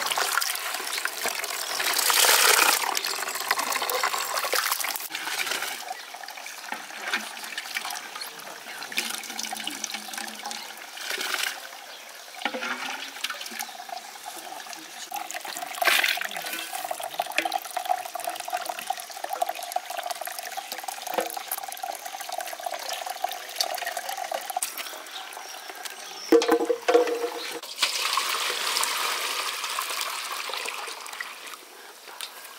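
Medlar juice running and dripping through a cloth strainer bag into a basin, pouring more heavily at times, with a couple of sharp knocks about 26 seconds in.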